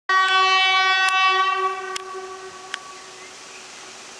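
ET22 electric freight locomotive sounding its horn: one long single-pitched blast that holds for about two seconds, then fades away. A few sharp clicks come over it.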